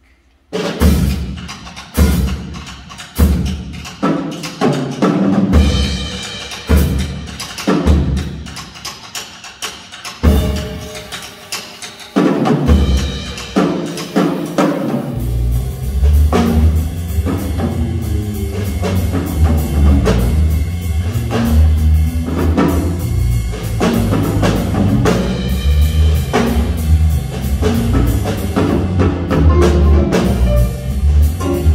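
Jazz big band playing. It opens with strong accented hits about once a second, each left to ring out. About halfway through, the full band comes in with drums and a steady moving bass line underneath.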